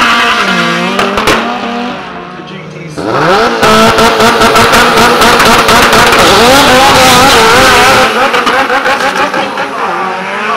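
Drag-racing car engines at full throttle. A departing car's engine falls away over the first two seconds. About three seconds in, another engine revs up sharply and stays loud at high revs, rising and dipping, until it fades after about eight seconds.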